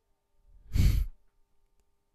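A man's brief sigh, a short breath pushed out close to the microphone about a second in, lasting about half a second.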